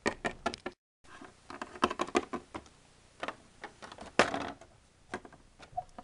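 Small plastic toy figurines handled, tapped and set down on a plastic playset and a tabletop: scattered sharp clicks and knocks, the loudest about four seconds in. A moment of dead silence falls just under a second in.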